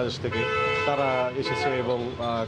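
A vehicle horn honks once, a steady tone lasting about a second, over a man talking.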